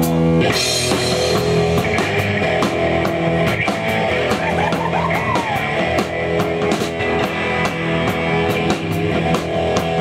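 Live rock band of electric guitars, bass and drum kit playing a hard-rock cover medley through amplifiers. The full band comes in suddenly about half a second in with a cymbal crash, and the drums and cymbals keep up a steady beat under loud distorted guitar chords.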